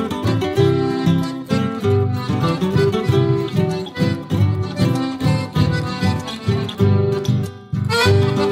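Instrumental passage of a chamarrita, Argentine folk dance music played by a chamamé ensemble, with guitars over a regular bass pulse and no singing.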